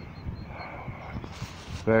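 Quiet outdoor background with no distinct event, and a man's voice starting right at the end.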